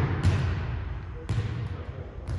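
A volleyball bouncing twice on a hardwood gym floor, about a second apart, each bounce echoing in the large hall, while the echo of a harder hit just before is still dying away.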